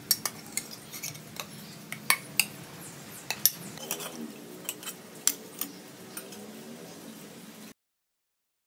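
Kitchen clatter as boiled potatoes are lifted from a steel pressure cooker onto a ceramic plate: a run of sharp, irregular clinks and taps of metal and crockery. The sound cuts off just before the end.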